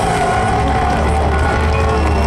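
Live rock band playing loud through a PA, with electric bass and drums. A low bass note is held and rings steadily from about half a second in.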